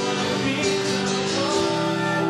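Live pop-rock song with acoustic guitar strumming steadily under long held notes.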